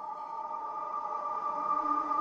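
Background ambient music: a soft drone of steady held tones that swells slightly, with a lower note joining near the end.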